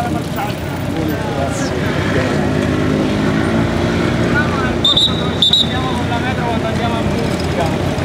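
Busy street noise with cyclists passing: a motor vehicle engine hums steadily through the middle, with scattered voices, and two short high rings sound close together about five seconds in.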